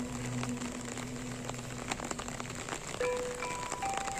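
Steady rain falling, with Sundanese degung gamelan music: a low held tone fades out, and a new ringing note is struck about three seconds in.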